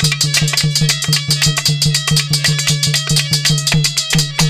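Instrumental interlude of Aalha folk music: harmonium playing sustained notes over a fast, steady drum beat.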